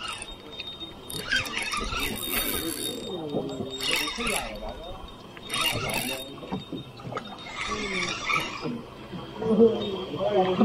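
Spinning reel being cranked in short bursts of whirring as a silver croaker is reeled in to the boat.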